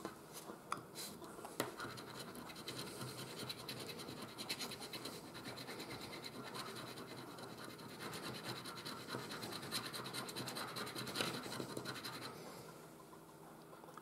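A coin scraping the coating off a scratch-off lottery ticket in fast, continuous strokes, faint, stopping shortly before the end.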